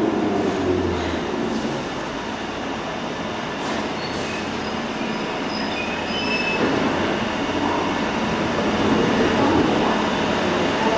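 A London Underground 1972 Stock deep-tube train braking to a stop at a station platform: its motor whine falls away in the first second, then short high brake squeals come midway. Near the end the doors slide open.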